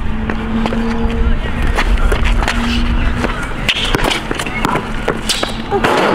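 Basketball dribbled on an outdoor hard court, a run of irregular bounces, over a low rumble. A steady hum sounds through the first half.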